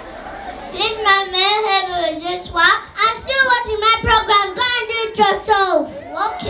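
A young child singing solo into a microphone in one high voice, starting about a second in.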